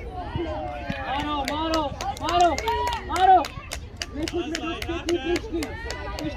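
Several voices calling and shouting across a football pitch, their pitch swooping up and down. From about a second and a half in, a quick run of sharp taps, several a second, sounds under the voices.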